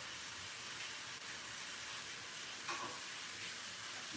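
A faint, steady hiss in a quiet kitchen, with one brief faint sound about three-quarters of the way through.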